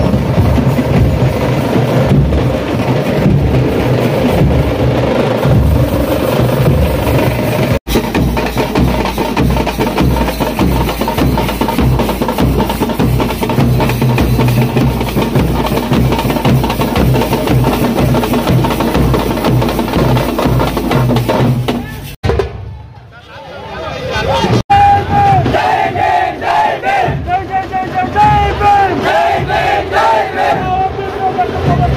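Procession drums beating a fast, steady rhythm. After a brief break a little over twenty seconds in, a crowd of men shouting and cheering takes over for the last few seconds.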